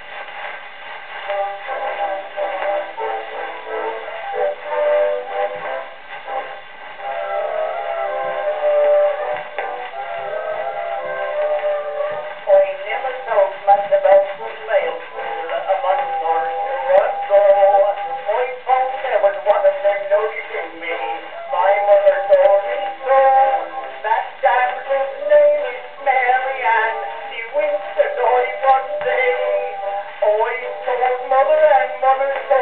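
Acoustic horn gramophone playing an early shellac disc: the instrumental introduction to a music-hall song, with melodic notes coming in at the start. The sound is thin and boxy, with no deep bass and nothing high, over light surface crackle.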